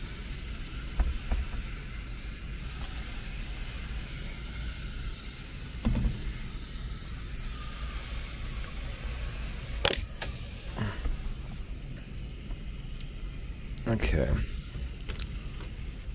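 Hand-pump pressure sprayer misting diluted coil cleaner onto an evaporator coil: a steady spray hiss, broken by a couple of brief knocks.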